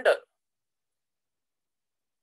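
The last syllable of a spoken word ends abruptly about a quarter second in, followed by dead silence for the rest of the time.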